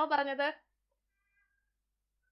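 A woman's voice finishing a drawn-out word in the first half-second, then near silence.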